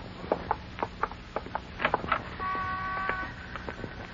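Radio sound effects: footsteps walking, a sharp step about three times a second, then a car horn sounding one steady chord for about a second.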